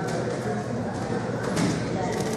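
Indistinct voices in a large, echoing room, with a short breathy hiss about one and a half seconds in.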